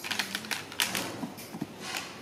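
Hard plastic parts of a toy shopping trolley clattering and clicking as they are handled and knocked together: a quick run of clicks in the first second and a couple more near the end.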